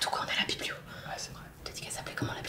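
Quiet whispered speech in short breathy bursts, with no voiced tone.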